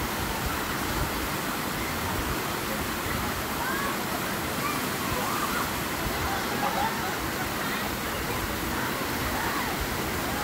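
Steady rushing of creek water pouring down a sloping rock slide into a pool, with faint distant voices of people playing in the water.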